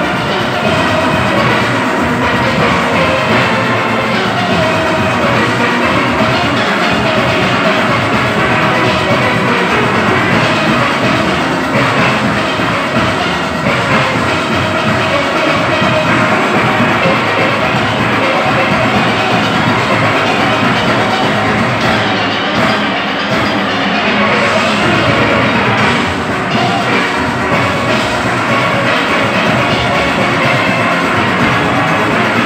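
Large steel orchestra playing live: many steelpans of different ranges sounding together over drums and percussion, dense and steady.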